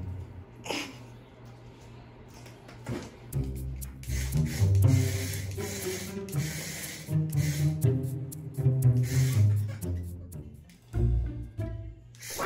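Background music: low cello and double-bass string lines that stop and restart in short phrases.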